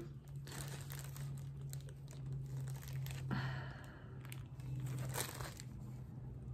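Soft, irregular rustling and crinkling of fingers handling a small Santa ornament with a fluffy cotton beard and felt hat, over a steady low hum.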